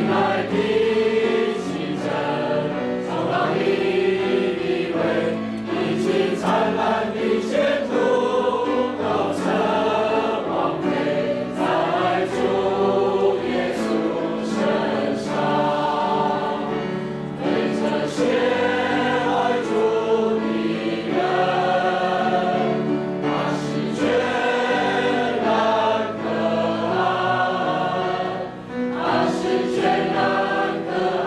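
A congregation of men and women singing a hymn together, one continuous sung verse with held notes that change about once a second.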